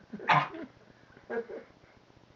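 Dogs at play: one dog gives a short, loud vocal burst about a third of a second in, then a quieter one about a second later.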